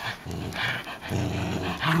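Puppies play-growling as they tug on a rope toy. A low, steady growl starts about a second in.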